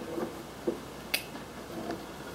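A marker cap pulled off with a single sharp click about a second in, over quiet room tone.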